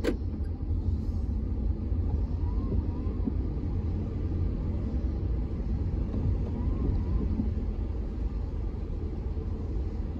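Steady low rumble of a car's engine and tyres on a wet road, heard from inside the cabin while driving. A sharp click sounds at the very start, and faint short chirps come and go every few seconds.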